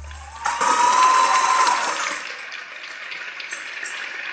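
Audience applause breaking out as the music stops. The clapping comes in suddenly about half a second in, with one long high cheer over it. It is loudest for the next second and a half, then eases off but keeps going.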